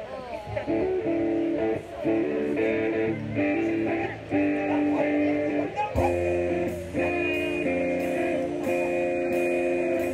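Live electric guitar strumming sustained chords to open a song; about six seconds in, bass guitar and drums come in with a steady beat.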